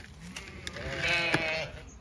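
A Zwartbles ewe bleating: one long, wavering call that starts about half a second in and fades near the end, fainter than the calls around it, from an in-lamb flock calling for its evening feed.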